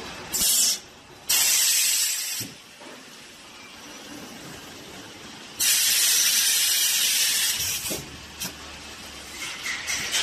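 Conveyor vacuum packaging machine letting out loud bursts of air hiss: a short one just after the start, a second of about a second soon after, and a longer one of about two seconds past the middle, with a lower steady machine noise between them.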